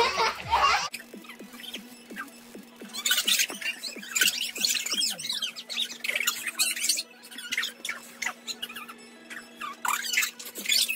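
Children squealing and laughing in high-pitched bursts, loudest from about three to seven seconds in and again near the end, over a faint steady low tone.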